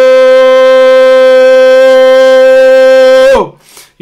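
A shofar sounded in one long, loud, steady blast. Its pitch drops as the note breaks off about three and a half seconds in.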